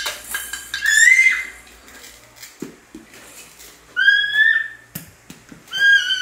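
Hollow plastic toy fruit pieces clicking and clattering as they are handled and knocked on a tiled floor, with a few short high-pitched calls: one about a second in, one at about four seconds, one near the end.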